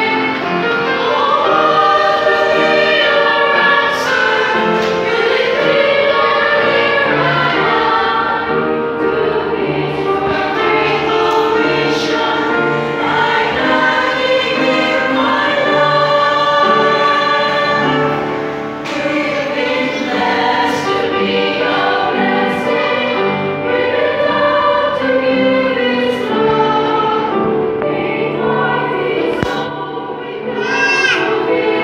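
Choir of women singing together in sustained phrases, with a brief pause between phrases about two-thirds of the way through.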